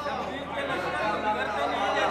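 Indistinct chatter of several voices in a large hall, no single clear speaker.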